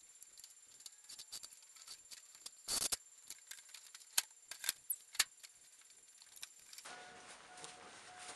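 An old clothes dryer on a metal hand truck being moved across a pickup's bed and tipped down off the tailgate: scattered rattles and clanks, one longer scraping rumble about three seconds in, and a few sharp knocks a second later.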